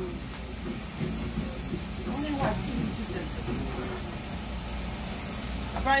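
Meat sizzling in a frying pan on the stove, a steady hiss, with faint voices in the background around the middle.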